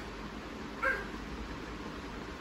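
A child's short, high-pitched yelp, once, a little under a second in.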